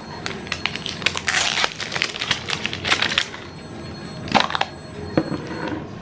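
Thin plastic wrapper being torn off a toy surprise egg and crumpled, a dense run of crinkling crackles with a louder rustle about four seconds in.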